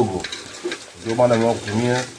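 A man's voice singing a drawn-out phrase, ending the first near the start and a second from about one second in, with light gritty scraping between the two.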